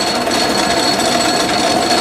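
Metal lathe running under power with its lead screw turning, a steady mechanical clatter of the gear train with a faint steady whine.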